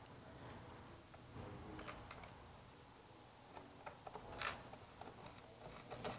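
Faint small clicks and light scraping of a Torx screwdriver turning a stainless steel Allen screw into a headlight housing through a plastic cover, with one sharper click about four and a half seconds in.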